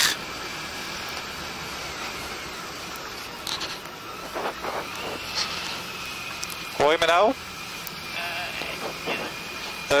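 Steady wind and riding noise of a Honda ST1300 Pan European motorcycle on the move, picked up by a helmet-mounted camera.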